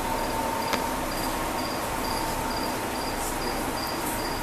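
A short, high chirp repeating about twice a second, like a cricket, over a steady hum and hiss. A single sharp click comes just under a second in.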